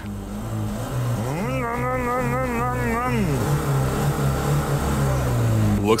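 Lada 2105 four-cylinder engine running steadily at low speed as the car rolls along.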